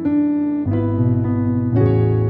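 Keyboard playing held gospel chords in A, moving from a D major add2 over F# toward an A major 7(13), with a new chord struck about every half second to second.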